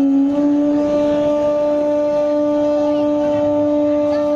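Bamboo transverse flute holding one long, steady note, sliding up slightly into the pitch as it begins.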